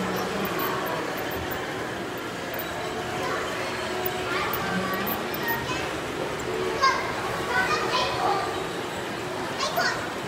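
Background chatter of visitors with children talking and calling out, several louder child calls in the second half.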